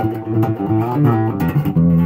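Ibanez TMB100 electric bass played on its front (P) pickup alone, with the tone controls turned down, through an Ampeg bass combo amp: a quick run of plucked notes changing several times a second.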